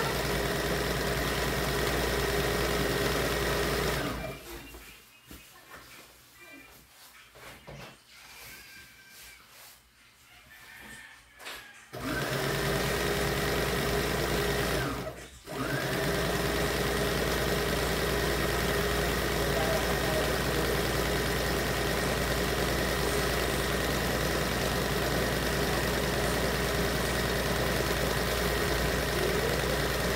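Electric sewing machine running at a steady speed as it stitches through fabric, a constant motor hum with a steady whine. It stops about four seconds in and stays quiet for some eight seconds, then starts again. It pauses for a moment a few seconds later and runs on steadily after that.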